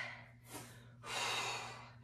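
A woman breathing hard from exertion during a dumbbell workout: a short breath about half a second in, then a long sighing exhale from about one second in.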